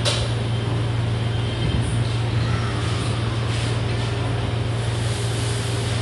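A steady low mechanical hum over a constant wash of background noise, with one sharp click right at the start.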